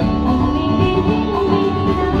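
Live band music played loud over the stage sound system: an instrumental passage between the sung lines of a Hindi film song.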